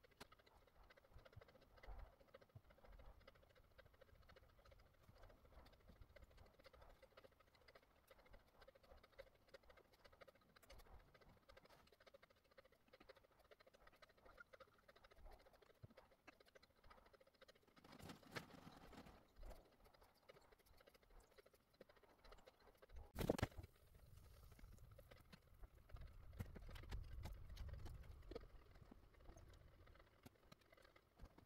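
Near silence with faint scattered ticks, and one sharp knock about 23 seconds in, followed by a faint low rumble.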